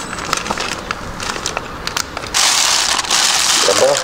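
Thin plastic packing bag crinkling and rustling as a brake caliper is handled out of it in a cardboard box. Light clicks and handling noises at first, then a loud rustle lasting about a second and a half from just past halfway.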